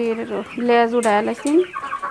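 A shed full of Sonali chickens calling: a string of level-pitched calls, one held about half a second, the rest short, with one rising call near the end.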